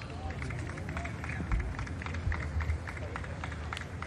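Golf gallery outdoors: faint scattered spectator voices and a murmur over a steady low rumble, with many short sharp sounds dotted through it, while the tee shot is in the air and lands.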